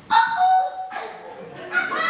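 A loud, high-pitched vocal shriek from a stage actor, held for under a second and sliding slightly down in pitch. A second high cry starts near the end.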